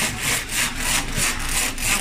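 Rotary die cutting machine running, with a steady rhythm of noisy strokes about four times a second as the tape and liner web feeds through its rollers.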